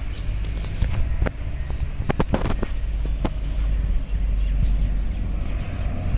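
Wind buffeting the microphone, a steady low rumble, with a few scattered knocks and two brief high chirps, the first just after the start.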